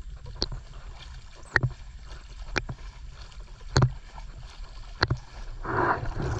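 Water splashing and sloshing as something is stroked through it, with a sharp splash about once a second. Near the end there is a louder, fuller rush of water.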